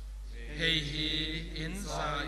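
A man chanting a liturgical prayer of the Mass in Mizo, one voice on long held, level notes that starts about half a second in and glides upward near the end.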